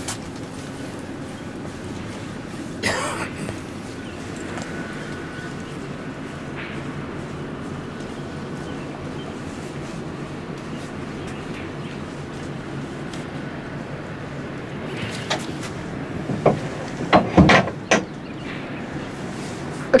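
Steady low rumble of a fishing boat on a fast river, with a short clatter about three seconds in and a few sharp knocks near the end as the rod loads up with a hooked fish.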